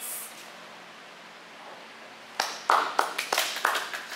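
Hands clapping: a short, irregular run of sharp claps that starts about two and a half seconds in.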